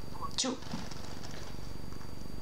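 One short spoken word, then a steady low buzzing that runs under the call audio, with a faint steady high whine.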